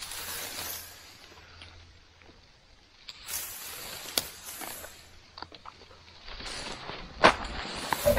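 Intermittent bursts of rustling as someone shifts about in dry, tall bank grass, with quieter gaps between them.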